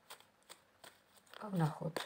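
A deck of tarot cards being shuffled by hand, giving a few soft, short card flicks. Near the end comes a brief murmured vocal sound, louder than the cards.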